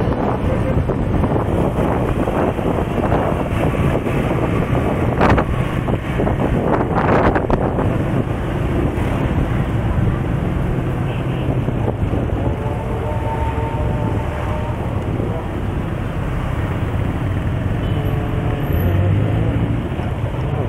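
Motorcycle riding through street traffic: the engine running steadily under heavy wind noise on the microphone, with a few brief louder swells about five to seven seconds in.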